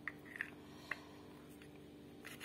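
Three faint small clicks in the first second as hands handle a plastic Pioneer self-defence pistol and its detached two-shot cartridge block, over a faint steady hum.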